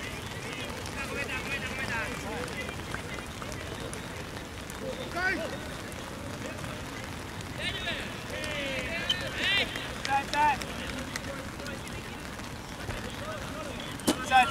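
Touch rugby players' shouted calls across the pitch: a few short shouts early on, one around the middle, and a cluster of several calls a little past halfway, over a steady outdoor background hiss.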